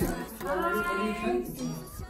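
A woman's voice singing a short, drawn-out phrase with gliding pitch.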